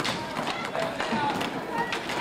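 Youth roller hockey play: inline skate wheels and hockey sticks clicking and knocking on a wooden gym floor, with children's and onlookers' voices in the background.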